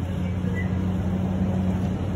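A steady low mechanical hum with two unchanging low tones, over a background of noise.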